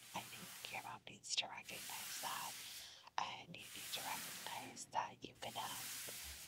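A woman whispering softly, close to the microphone, in continuous phrases with short pauses.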